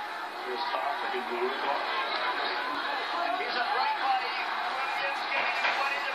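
Indistinct chatter of several overlapping voices, with no clear words.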